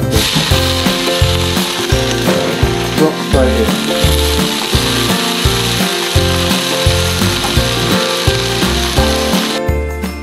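Shredded savoy cabbage sizzling loudly in a wok of hot butter or oil as it is tipped in and stir-fried, over background music. The sizzle cuts off suddenly near the end.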